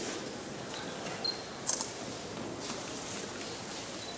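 Camera handling and lens noise: a short thin whir and a brighter click about a second and a half in. These sit over a steady low background murmur of an outdoor gathering.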